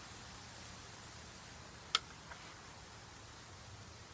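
A single short, sharp crack about two seconds in, followed by a faint tick: a shot from a scoped .22 rifle aimed at a target, over a low steady hiss.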